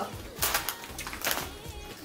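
Potato chips being chewed: two short clusters of crisp crunches, about half a second in and again past the one-second mark, over faint background music.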